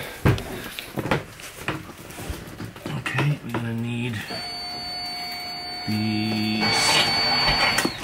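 Electric bilge pumps on a sailboat being switched on and off at the panel: two short spells of low, steady motor hum, and between and after them a thin, steady high whine lasting about three and a half seconds that cuts off just before the end.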